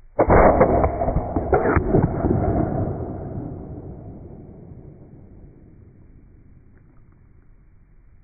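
Slowed-down audio of a 9mm AEA Terminator air-rifle shot hitting a honeydew melon: a deep boom that starts suddenly and fades away over about five seconds.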